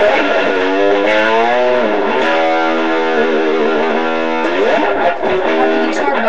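Guitar played solo in a blues-rock style: a few long held notes that bend in pitch and waver, with a slide between notes near the end.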